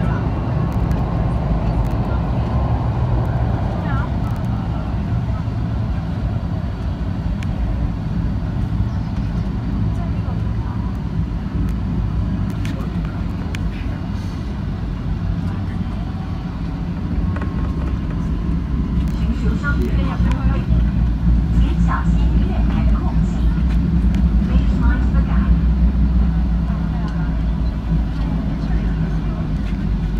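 Low, steady rumble of a metro train running on its track, heard from inside the car. It grows louder through the second half, then eases as the train draws into a station.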